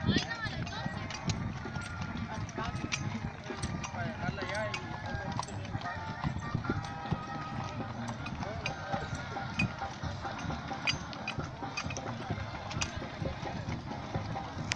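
Hooves of a line of walking horses clip-clopping on a dirt track, with the indistinct chatter of the riders.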